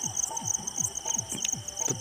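Crickets chirping in the background, a steady, rapidly pulsing high trill, with faint, quick low pulses underneath.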